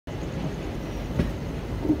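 Passenger train running slowly over the rails, heard from on board: a steady low rumble with short wheel knocks over the rail joints, one about a second in and another near the end.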